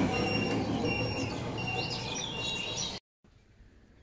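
Birds chirping over a low outdoor rumble, with a high steady tone that repeats at an even pace. About three seconds in the sound cuts out and turns much quieter, leaving a few faint chirps.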